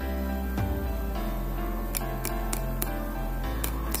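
Background music, over which the flat of a steel kitchen knife blade taps a lime held in the hand, about seven short taps, mostly in the second half, to loosen the juice inside.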